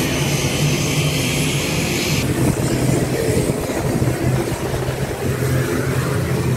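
Turboprop airliner engine running steadily on the apron: a constant low hum under a broad rushing noise, with a high hiss that drops out about two seconds in.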